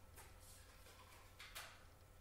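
Near silence: room tone with a faint hum and two faint, brief rustles, the louder one about one and a half seconds in.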